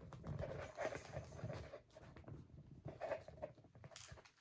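A pet dog making faint, short, irregular sounds close by.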